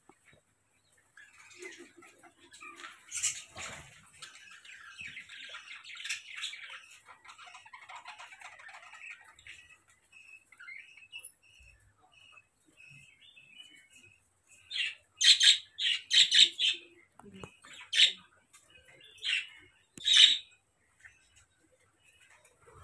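A bird calling: soft chirping and chatter through the first half, then a run of about six loud, short, harsh squawks from about fifteen seconds in.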